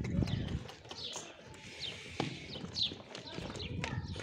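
A flock of Sardi rams crowding together in a pen, hooves shuffling and knocking on the ground, with an occasional sharp knock.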